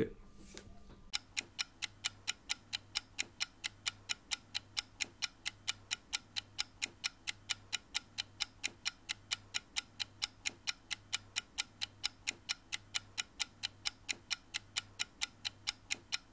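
Steady clock-like ticking, about four even ticks a second, starting about a second in and running on without change.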